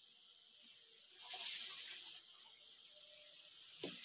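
A pan of tomato masala sizzling faintly, with a brief soft hiss about a second in that fades a second later; otherwise near silence.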